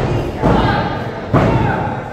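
Heavy thuds in a wrestling ring as bodies hit the mat during grappling, three in close succession with voices between them.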